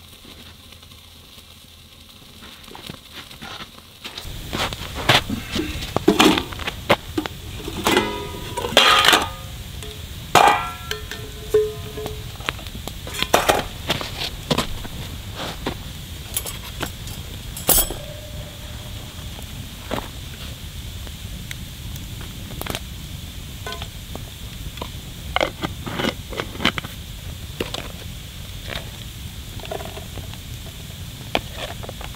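Wood campfire crackling, with scattered knocks and clinks of a cast-iron skillet and food containers being handled. It starts about four seconds in, after a quieter stretch.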